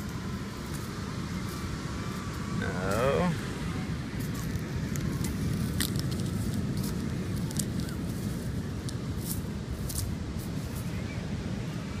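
Wind buffeting the microphone while a bare hand digs and scrapes through beach sand, with scattered crackling clicks of sand grains. A brief voiced sound from the digger comes about three seconds in.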